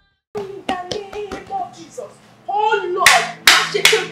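A woman wailing in distress while clapping her hands. The claps come throughout, with a cluster of loud, sharp ones about three seconds in.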